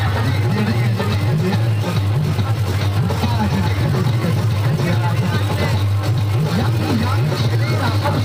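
Music with singing played loudly through a sound system's horn loudspeakers, over the steady low drone of the diesel generator that powers it.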